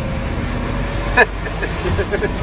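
Utility truck driving on a wet road, heard from inside the cab: a steady low rumble of engine and tyres. About a second in comes one short squeak that falls quickly in pitch.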